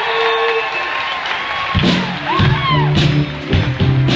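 Audience applause and cheering, then a live band with drums and bass guitar strikes up a little under two seconds in.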